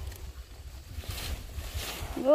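Wind rumbling on the microphone, with two brief rustles of leaves and stalks being handled, about a second in and near the end.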